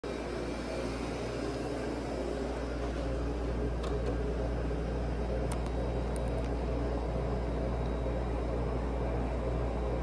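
Steady low mechanical hum, with a few faint clicks near the middle.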